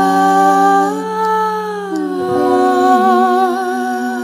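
Two women's voices holding long wordless notes together in harmony. One of the notes drops to a new pitch about two seconds in, and a light vibrato comes in near the end.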